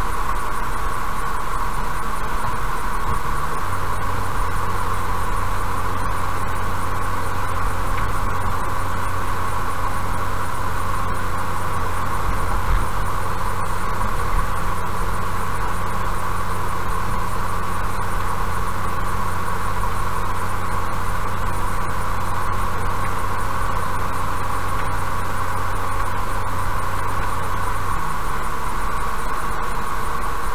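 Steady road and engine noise of a car cruising on asphalt at about 55 km/h, heard from inside the car. A low hum comes in a few seconds in and fades out near the end.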